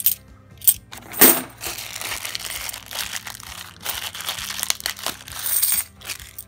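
50p coins clinking together as they are handled and stacked in the hand, with two sharp clinks in the first second and a half the loudest. A plastic coin bag crinkles and rustles through the rest, louder again near the end.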